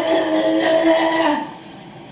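A woman's drawn-out vocal sound: one held, strained note lasting about a second and a half, falling off at the end.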